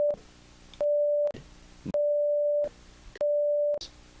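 Censor bleeps covering a string of swear words: a steady, single mid-pitched beep tone about half a second long. One ends just after the start, and three more follow with short quiet gaps between them.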